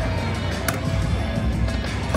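Aristocrat Autumn Moon video slot machine playing its reel-spin music and sounds during a spin, over the steady din of a casino floor, with one short sharp click-like sound about two-thirds of a second in.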